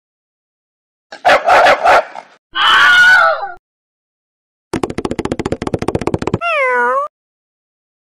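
Cartoon animal sound effects: a few quick barks about a second in, then a high, bending animal cry. After that comes a fast, even pattering of scurrying footsteps, ending in a short wavering cry.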